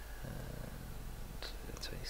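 A man's low, drawn-out hum, a hesitation "mmm" or "uhh", starting about a quarter second in, with a short breathy hiss near the end as he gets ready to speak.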